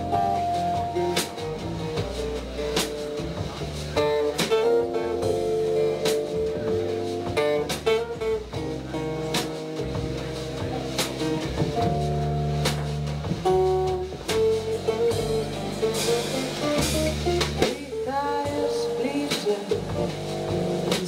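Live jazz-pop band playing an instrumental intro: upright bass, guitar and keyboard with drums keeping time on the cymbals.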